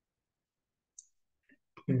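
Near silence with one faint, short, high click about halfway through, then a man's voice starting a word just before the end.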